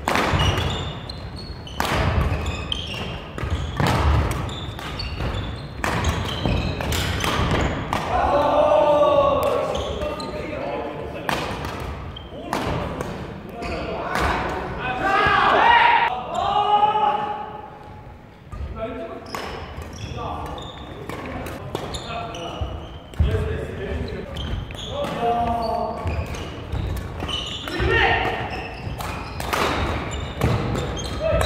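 Badminton doubles play on a wooden gym floor: rackets repeatedly smacking the shuttlecock and shoes striking the court in sharp, irregular hits, with players shouting between some of the strokes.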